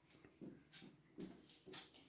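Faint squeaks and scratches of a marker pen writing on a whiteboard, in about four short strokes.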